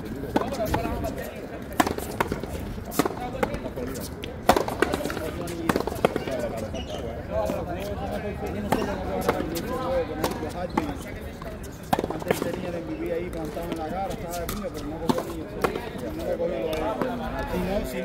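A racket-and-ball rally on a frontón court: sharp cracks of a ball struck by rackets and slapping off the wall, a second to a few seconds apart. People talk throughout.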